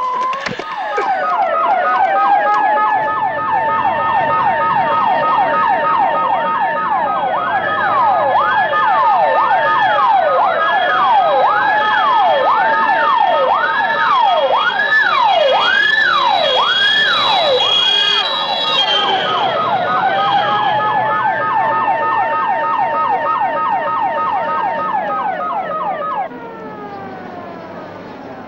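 Ambulance siren wailing: slow rises to a held tone, a stretch of fast up-and-down sweeps through the middle, then slow wails again, with a fast beeping tone about four times a second alongside. It falls away and grows quieter near the end.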